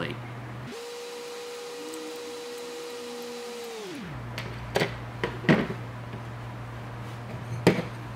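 Several sharp metal clicks and clinks as a GNSS antenna's magnetic base plate is lifted off its unscrewed mount and the plate and a small screwdriver are set down on a table. Before that comes a steady hum of about three seconds that drops in pitch as it stops.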